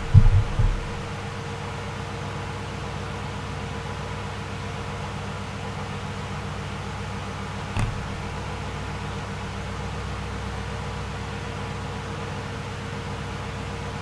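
A steady background hum with a few fixed tones, like a fan or appliance running. Low thumps sound in the first second, and a single short knock comes about eight seconds in.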